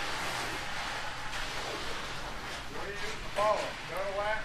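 Faint, steady scraping hiss of wet concrete being worked by hand, a screed board and a bull float drawn over the fresh slab, with a man's voice faint in the background late on.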